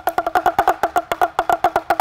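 Chinese pellet drum (rattle drum) twirled rapidly back and forth on its handle, the beads on its strings striking the two drumheads in turn: a fast, even run of short hollow taps, roughly a dozen a second.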